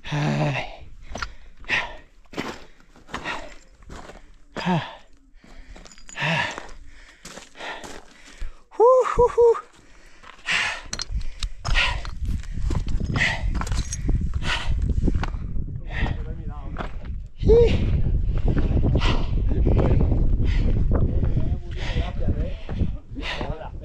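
A runner's hard, panting breaths and steps on rock while scrambling up a steep rocky ridge, with a short voiced exclamation about nine seconds in. Wind rumbles on the microphone from about halfway, louder over the last few seconds.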